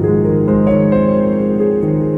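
Calm solo piano music: held notes ringing together, with new notes entering about half a second in.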